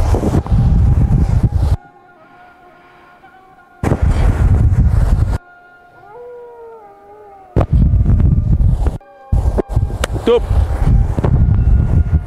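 Wind buffeting the camera microphone in four loud gusts, with faint drawn-out tones, one sliding down in pitch, audible in the lulls between them.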